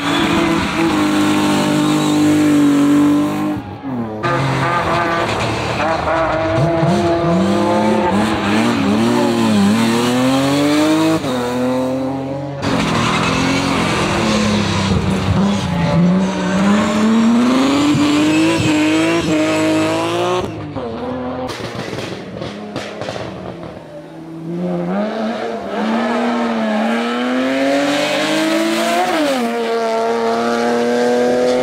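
BMW 3 Series race cars, one after another, driven sideways through a hairpin: engines revving up and down with the throttle, with tyres squealing. The sound breaks off abruptly a few times as one car gives way to the next.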